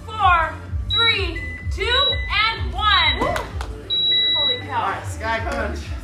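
Gym interval timer beeping: a few high electronic beeps, the longest near the end, signalling the end of a work interval, over background music.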